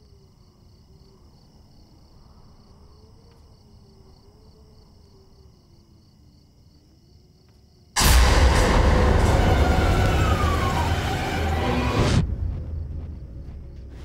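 Soft night-time cricket chirring with a faint wavering low tone, then about eight seconds in a sudden, very loud burst of noise with a falling scream-like cry inside it, lasting about four seconds and cutting off abruptly: the scream from next door.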